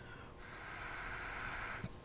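Air hissing through an EVAP purge valve as it is blown into by mouth, with a thin high whistle; it starts about half a second in and stops shortly before the end. The valve is normally closed and should hold its seal, so the escaping air means its internal seal is damaged.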